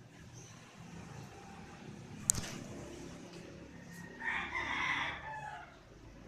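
Squeaky rubber dog toy squawking for about a second as a puppy chews it, about four seconds in, with a sharp click about two seconds in.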